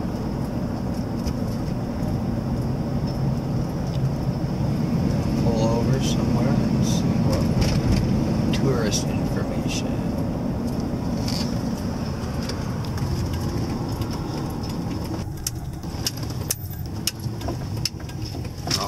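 Steady low engine and road rumble heard inside the cab of a moving Ford E-350 van, with scattered light rattles and clicks. The rumble eases a little about fifteen seconds in.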